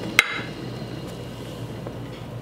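Electric potter's wheel running steadily with a low hum, a bowl held upside down in a trimming grip on it. One sharp, briefly ringing click sounds just after the start.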